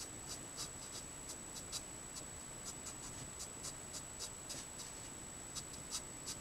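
Letraset Promarker nib scratching on card in quick, short strokes, about two to three a second, as hair is coloured in. A faint steady high whine runs underneath.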